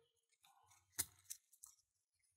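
Key pushed into the plug of an antique wafer lock: one sharp metallic click about a second in, then two fainter clicks.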